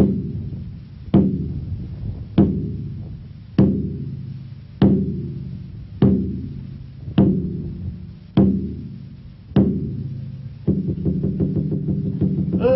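A drum beaten in a slow, steady beat, one stroke about every 1.2 s, each stroke ringing out and dying away. Near the end the strokes come quicker.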